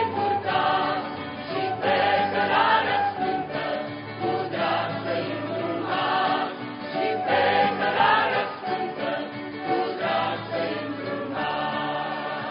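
Church choir singing a Romanian hymn in several voices, women's voices to the fore.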